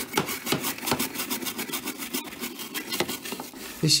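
Stiff-bristled brush scrubbing back and forth inside the wet, soapy plastic detergent-drawer recess of a washing machine, in quick short strokes, several a second.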